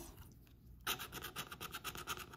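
Plastic scratcher tool scraping the coating off a scratch-off lottery ticket in quick back-and-forth strokes, starting about a second in.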